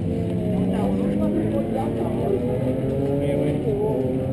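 Ducati Monster S2R 800's air-cooled L-twin idling steadily while the bike stands still, with people talking over it.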